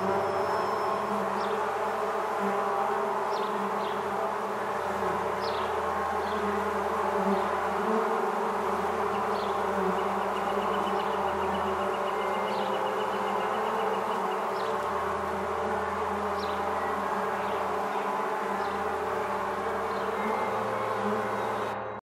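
Dense, steady buzzing of a honeybee swarm, with a low hum underneath that changes every few seconds and short high chirps now and then. The sound drops away just at the end.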